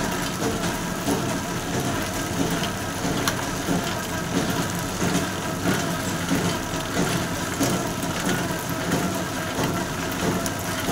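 Gur batasa (jaggery sugar-drop) making machine running: a steady mechanical clatter with a sharper knock about once a second.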